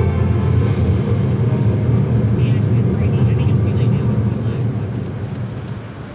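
Film soundtrack played over a hall's loudspeakers: a deep, steady rumble with music under it, fading down over the last second or so. A few faint clicks come through in the middle.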